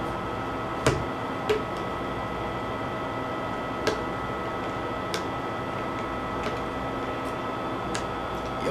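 A spoon clicking a few times against a mayonnaise jar while scooping mayonnaise out, over a steady room hum with a faint high tone.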